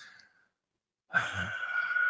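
A man's long audible breath, like a sigh, taken close to a podcast microphone about a second in, with a faint steady whistle in it.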